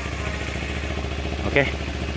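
Kawasaki Ninja 250 FI's parallel-twin engine idling with a steady, even low hum.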